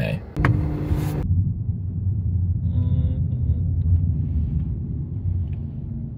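Low, steady engine rumble of a hot rod car on the street, fading slightly toward the end.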